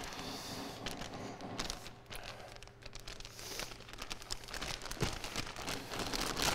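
Clear plastic mushroom grow bag of sawdust-and-soy-hull substrate crinkling and crackling irregularly as its top is pinched shut, collapsed and folded down against the block.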